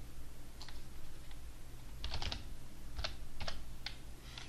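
Computer keyboard being typed on: a short word typed as a series of light, irregularly spaced key clicks, some coming in quick clusters.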